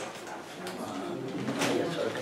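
Low, indistinct human voices murmuring, with a brief rustle of handling about a second and a half in.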